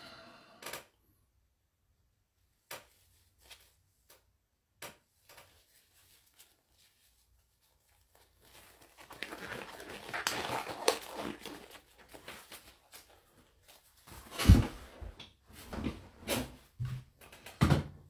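Scattered handling noises. A few faint clicks, then a stretch of rustling about halfway through, then several sharp knocks near the end.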